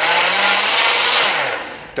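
A high-powered countertop blender run in a short burst to mix lemon juice into a liquid kale shake; its whirring fades and the motor hum drops as it winds down in the last half-second or so.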